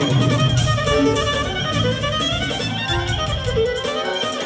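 Live band music: a clarinet playing a wavering lead melody over keyboards and a steady drum beat.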